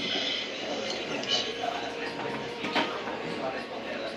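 Light knocks and clinks of a utensil against pots and cookware on a kitchen stove, the sharpest click about three quarters of the way through.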